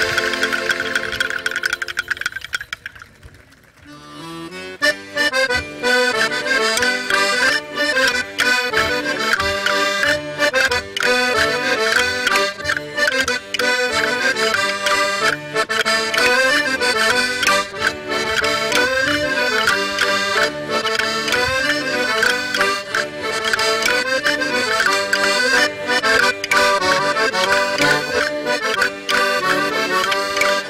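Accordions of a children's folk band playing traditional music. A held chord dies away in the first three seconds, and after a brief pause a lively new tune starts about four and a half seconds in.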